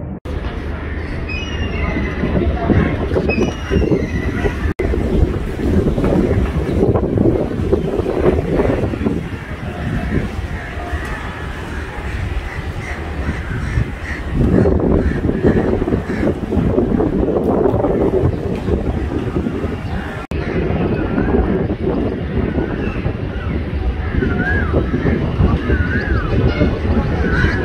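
Outdoor railway-platform ambience: a steady noisy rumble of wind on the microphone, with indistinct voices in the background. It dips briefly about five seconds in and again about twenty seconds in.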